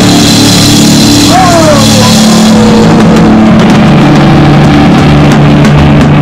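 Punk rock band playing loud in a rehearsal room: distorted electric guitar and bass holding chords over drums and cymbals, recorded close to overload. A pitched sound slides downward about a second and a half in.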